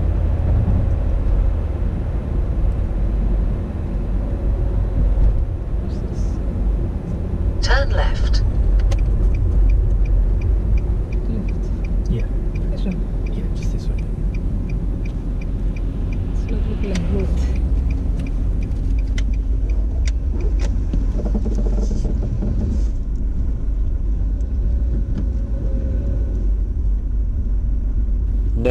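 Car cabin road noise while driving: a steady low engine and tyre rumble. About a third of the way in, the turn-signal indicator ticks evenly, about three ticks a second, for several seconds.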